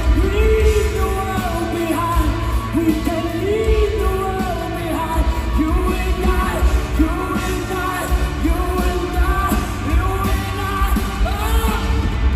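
Rock band playing live in an arena: a male lead singer singing a sustained, gliding melody over drums, bass and guitars, heard through the PA from the audience, with the hall's reverberation.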